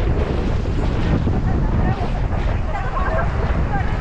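Heavy wind buffeting on the microphone over river water rushing past an inflatable raft as its crew paddles.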